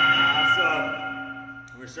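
A boxing round timer's bell ringing out and fading away over about a second and a half, marking the end of a round.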